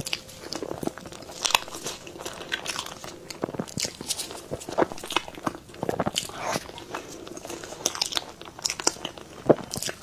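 Close-miked eating of a soft green cream-filled cake: bites and chewing with many short, irregular mouth smacks and clicks.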